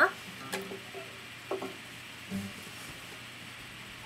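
A few soft, scattered plucked notes on an acoustic guitar, with quiet gaps between them.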